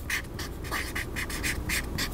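Felt-tip marker writing a word on chart paper: a quick run of short strokes, several a second.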